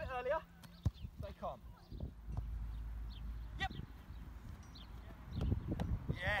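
Football goalkeeper drill on grass: a sharp smack about a second in as the thrown ball is met, then dull thuds near the end as the young goalkeeper dives forward. Wind rumbles on the microphone, and faint voices come and go.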